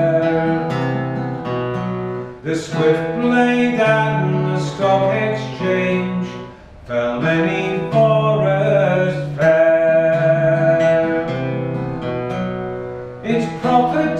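Live acoustic folk music: a strummed acoustic guitar with a melody line of held notes over it, between sung lines of the song.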